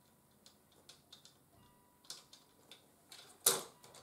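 A small plastic DIL pin header socket being handled and pressed into a printed circuit board: scattered light clicks and taps of plastic and pins against the board. A short, louder rush of noise comes about three and a half seconds in.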